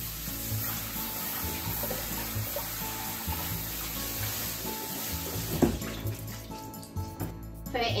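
Kitchen faucet running a steady stream of water over bean sprouts in a mesh strainer as they are rinsed and stirred by hand in the sink; the water stops near the end.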